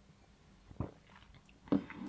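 A man drinking beer from a glass: a sip and a short swallow a little under a second in, then faint mouth and breath sounds near the end.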